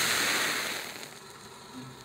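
Pyrotechnic fire burst: a loud rushing of flame that fades steadily as the fireball dies down.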